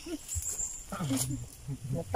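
Faint, brief voice sounds from people close by, with a light click about half a second in.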